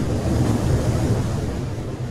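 Intro sound effect for an animated logo: a loud, noisy whoosh over a deep rumble that swells and then begins to ease off near the end.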